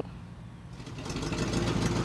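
Box truck's engine idling, swelling in over the first second and a half and then running steadily.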